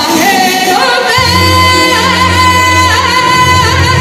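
A woman singing copla live into a handheld microphone, her voice rising in the first second and then holding long notes with a wide vibrato. A steady low accompaniment comes in about a second in.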